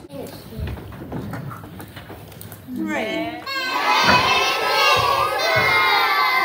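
A few dull thumps and murmur, then about halfway a voice slides up and down in pitch and a crowd of young children starts shouting and cheering together, loud and overlapping.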